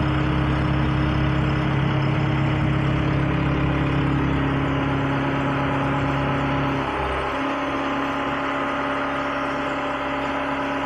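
Engine of the machine moving the engineless backhoe, running steadily with a low hum; about seven seconds in its lowest notes drop away and it eases down a little.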